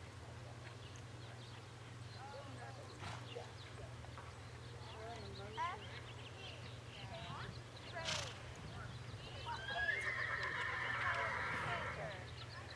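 A horse neighing: one long call of about two seconds near the end, the loudest sound here.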